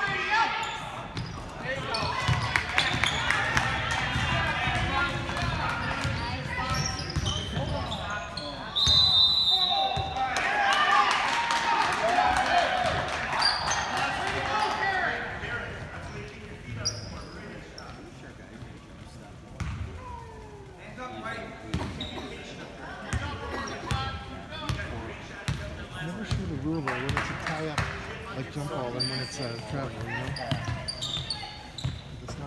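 Basketball being dribbled on a hardwood gym floor during a game, with voices from the crowd and players echoing in the gym. The voices are loudest in the first half and grow quieter around the middle. About nine seconds in there is one short, high, steady tone.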